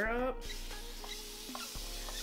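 A trigger mist spray bottle spraying water onto hair, heard as a soft hiss with a couple of small clicks, under quiet background music.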